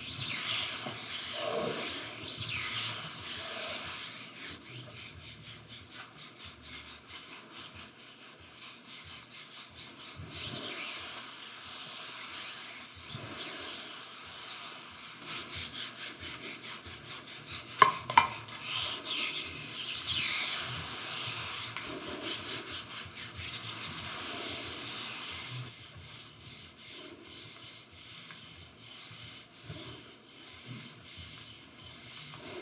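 Bamboo massage sticks rubbing and sliding over the body in long repeated strokes, with fine ticking and a sharp click about 18 seconds in.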